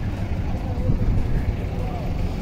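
Outdoor crowd ambience: faint, distant voices over a steady low rumble.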